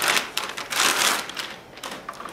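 Anti-static plastic bag crinkling and rustling as a motherboard is slid out of it. The rustle fades after about a second and a half, with a few light clicks near the end as the board is handled on the table.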